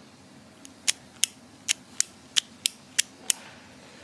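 A small plastic Power Rangers Dino Charger toy clicking in the hand: a run of about eight sharp clicks, roughly three a second.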